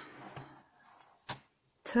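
Lid of a metal pencil tin being opened: faint handling noise, then one sharp click a little over a second in as the lid comes free.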